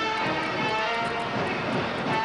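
Grade-school band playing, with trumpets holding long notes that change pitch a few times.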